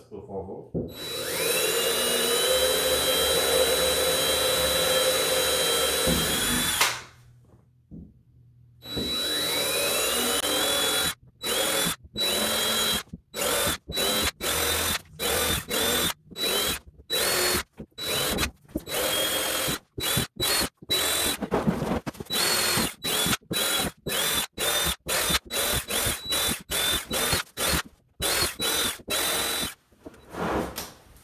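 Cordless drill boring the first, smaller pilot holes through the plastic rim of a Pelican Trek 60 sled. Its motor whine rises as it spins up. There is one long run of about six seconds, then after a pause another run, then many short trigger bursts, roughly two a second, to near the end.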